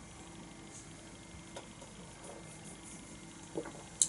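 Quiet room tone with a faint steady hum, a small click in the middle, and a soft knock near the end as a beer glass is set down on a wooden table.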